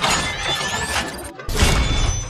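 Logo-intro sound effects: a dense shattering crash with rising whooshes, a brief break about 1.3 s in, then another hit that fades out.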